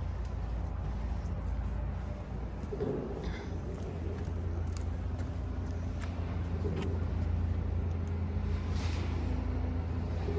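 Steady outdoor background noise: a low rumble with a soft hiss over it and a few faint clicks.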